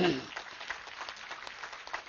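Light, scattered hand clapping from a small audience, separate claps rather than a dense ovation.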